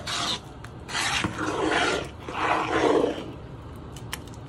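Metal spoon stirring a thick, sticky sweet date pongal in a pot, scraping through the mixture and along the pot in a few long strokes with short pauses between.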